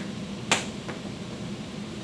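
A single sharp click about half a second in, then a fainter one, over a low steady hum of room noise.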